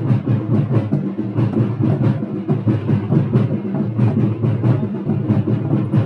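Drums beaten loudly in a fast, steady rhythm, with several strikes a second.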